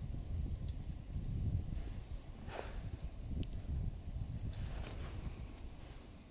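Wind rumbling on the microphone, with two faint calls from distant sandhill cranes, one about halfway through and a weaker one a couple of seconds later.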